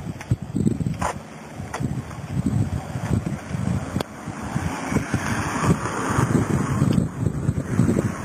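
Wind buffeting a handheld camera's microphone: an uneven, gusting low rumble.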